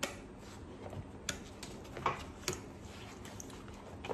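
Olive-drab canvas M9 gas mask bag being handled and opened: the cloth rustles, with a few short, sharp clicks as its snap-fastened flap comes open.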